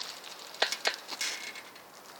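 Bicycle being ridden: a few sharp clicks and rattles from the bike, about half a second and just under a second in, over a steady rolling hiss.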